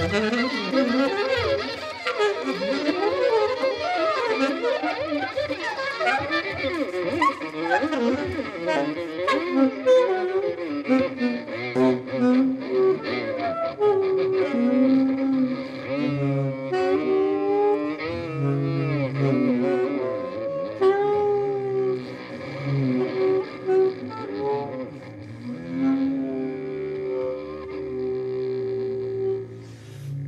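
Saxophone and violin playing together as a duo: fast, busy lines for the first half, then longer held notes from about halfway, with the playing breaking off right at the end.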